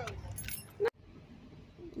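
A set of keys jingling with light high clinks in the first second, then a sudden cut-off.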